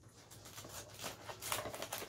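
Faint rustling and small clicks of the AlexLoop magnetic loop antenna's tube sections and cable being handled and laid into place by hand, a little louder about one and a half seconds in.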